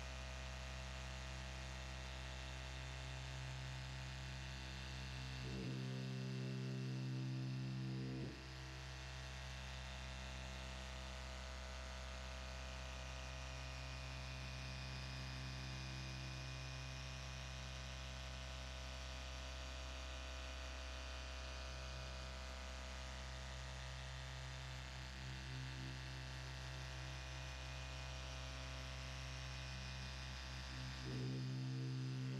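Dual-action polisher with a foam pad running steadily, working cutting compound over sanding scratches in car clear coat: a steady electric motor hum. About six seconds in it gets louder and changes pitch for a couple of seconds, then settles back.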